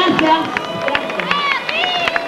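Concert audience shouting and cheering with scattered sharp claps, right after a song's singing stops.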